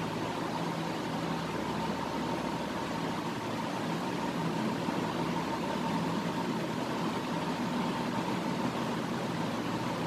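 Steady background hiss with a faint constant hum, unchanging throughout.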